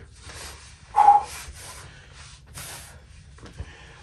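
Faint breathing and rustling of a person shifting onto their back on the floor, with one short vocal sound, a grunt or brief hum, about a second in.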